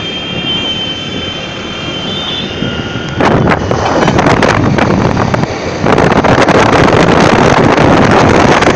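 Wind buffeting a phone microphone, with road and engine noise, while riding along a road in a moving vehicle. It jumps to much louder about three seconds in and stays loud, apart from a brief dip near six seconds.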